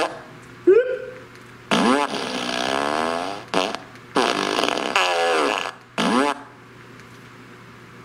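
Remote-controlled Fart Machine No. 2 (Boom Box Blaster) novelty speaker playing recorded fart sounds: several wavering bursts, the longest about two seconds, stopping about six and a half seconds in.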